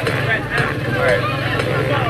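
Engine of a homemade scrap-metal car running at idle, a steady low rumble under brief talk.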